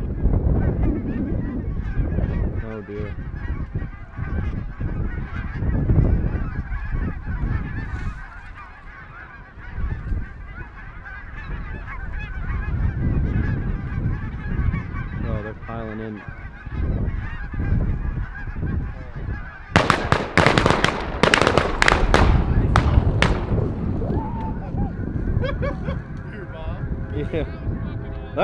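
A large flock of geese honking and calling continuously overhead, over a low rumble. About 20 seconds in comes a rapid volley of shotgun shots, some eight to ten blasts within about three seconds, as the hunters fire on the flock while the geese keep calling.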